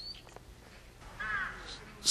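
A crow cawing once, briefly, a little past a second in, with a faint small-bird chirp at the start.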